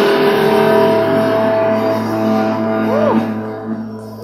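Live indie rock band letting a held chord ring out after a big hit, the guitars and cymbals sustaining and slowly fading. A short rising-and-falling pitch glide comes about three seconds in.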